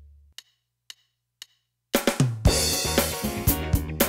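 A low note fades out, three faint clicks half a second apart count in, and about two seconds in a Yamaha DTX400K electronic drum kit starts a groove of bass drum, snare and hi-hat over a full band backing track from its module.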